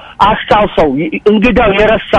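Speech only: a man talking without pause in Amharic.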